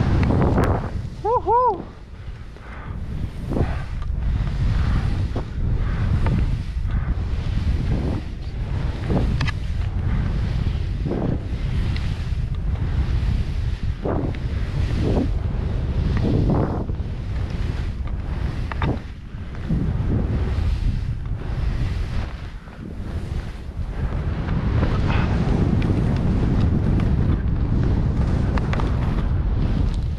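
Wind buffeting the microphone of a helmet camera on a fast ski descent, a steady low rumble, with the skis scraping through wind-compacted powder on each turn, about once a second. A short vocal whoop about a second and a half in.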